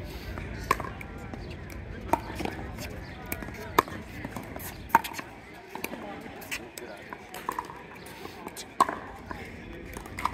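Pickleball rally: a series of sharp pops as paddles strike the plastic ball, coming every second or so, with the loudest hits about two, four, five and nine seconds in.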